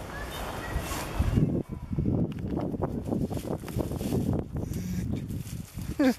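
Dry palmetto fronds and brush rustling and crackling in irregular bursts, starting about a second and a half in, as someone pushes into the thicket.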